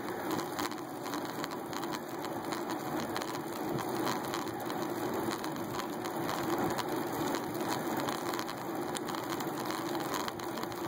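Bicycle rolling on an asphalt road, picked up by a phone mounted on the handlebars: a steady rushing noise with many faint, irregular clicks and rattles.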